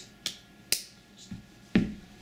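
Hand slaps striking a surface, four sharp hits in about two seconds, the second and fourth the loudest, made to imitate the sound of boots stomping on a man's head.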